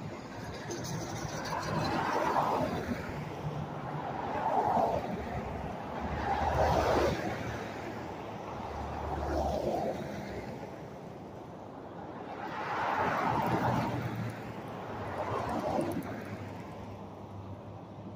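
Road traffic: cars driving past on a highway one after another, each swelling up and fading away as it goes by, about six passes in all.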